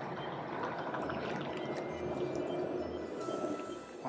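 Steady hum of honey bees around an opened hive, under soft background music with a few faint held notes.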